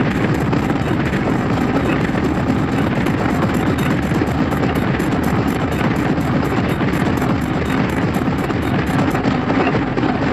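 Industrial hardcore music: a dense, distorted noise texture, loud and unbroken, with fast, evenly spaced pulses in the highs that drop out near the end.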